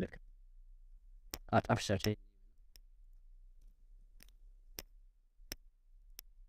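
Scattered sharp clicks of a computer keyboard being typed on, one every half second to a second, while code is edited.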